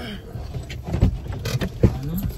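Car running slowly while being edged into a parking spot, heard from inside the cabin as a low rumble, with a few sharp knocks, the loudest near the end.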